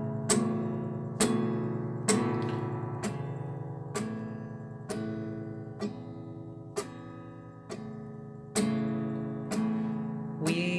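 Guitar strummed in slow, even strokes about one a second, each chord ringing out and fading before the next.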